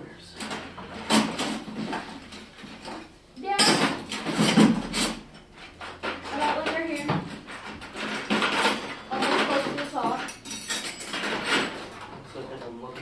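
Robot parts clattering and knocking as someone rummages through a bin of parts, loudest about four to five seconds in, with indistinct talk underneath.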